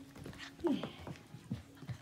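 Sheepadoodle puppies being petted and moving about, making scattered soft clicks and taps, with a woman's brief, quiet "yeah" just after half a second in.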